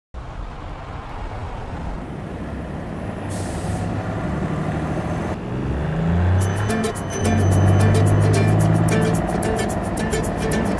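Street traffic with a rising low rumble of passing cars and a brief hiss about three seconds in. Music with a steady beat and bass comes in about six seconds in.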